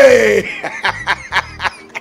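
A man laughing: a drawn-out falling whoop, then a quick run of short laughs that fades away.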